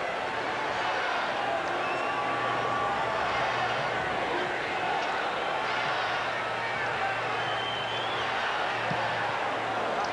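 Football stadium crowd noise: a steady din of many voices with scattered individual shouts.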